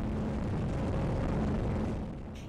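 Offshore powerboat running at high speed: a steady, loud mix of engine noise and rushing wind and water, with a low engine hum running through it.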